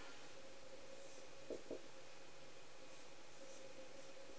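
Marker pen writing on a whiteboard: faint scratchy strokes, with two short taps about one and a half seconds in.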